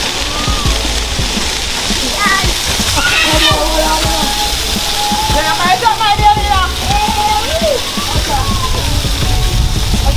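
Water running and splashing steadily, with voices calling out over it.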